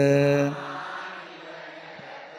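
A Buddhist monk's chanting voice holding the last steady note of a verse line; it stops about half a second in and leaves a fading echo through the hall's amplification.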